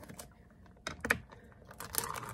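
Stiff lid of a new yogurt tub being worked open by hand: a few sharp plastic clicks and cracks about a second in and again near the end.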